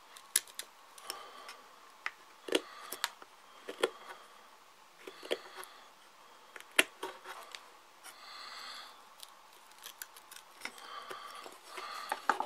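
Black Barracuda tactical knife whittling a wooden stick: irregular sharp clicks and a few short scraping strokes as shavings come off, one longer scrape a little past the middle. The blade is dull straight out of the box.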